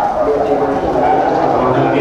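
A Buddhist monk's voice amplified through a handheld microphone, going on without a break at a steady level.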